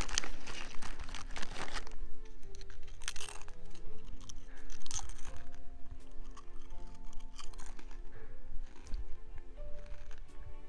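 A tortilla chip bag crinkling as a hand rummages in it, for about the first two seconds. Then soft background music of held notes, with a couple of brief crunches of chips being eaten.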